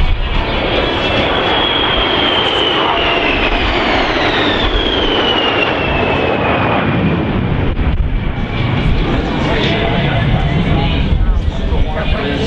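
A formation of four F/A-18F Super Hornets passing overhead, their twin F414 turbofans making a heavy, steady jet noise. A high whine slides down in pitch over several seconds as the jets go by.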